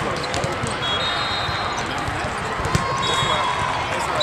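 Echoing din of a large multi-court volleyball hall: volleyballs thumping on the floor, voices of players and spectators, and scattered short knocks and high squeaks.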